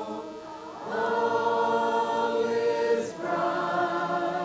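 A choir singing slowly in long held notes, with a short break for breath about half a second in and another near three seconds.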